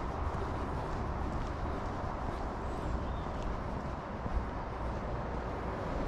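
Steady low outdoor rumble of distant road traffic, with no single sound standing out.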